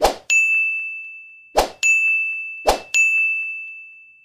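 End-screen button-animation sound effects: three short swooshes, each followed by a bright ding that rings on and fades, as the Like, Share and Comment buttons pop up. They come at the start, about one and a half seconds in, and just under three seconds in.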